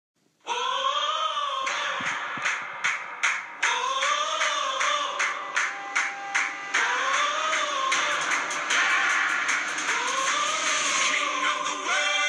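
Music with a steady drum beat and a repeating melody that swells up and falls back every few seconds.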